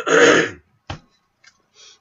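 A man clearing his throat once into his fist, a harsh burst lasting about half a second, followed by a short click about a second in.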